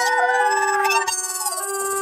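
A cartoon character's wailing cry of dismay, one long wavering howl that slides up and down and fades out over a second in, over sustained notes of background music.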